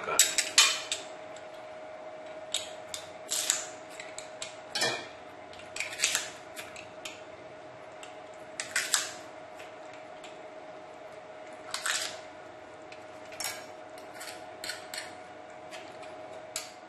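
Metal garlic press crushing garlic cloves over a stainless steel bowl: scattered clicks and clinks of metal on metal, a second or a few seconds apart.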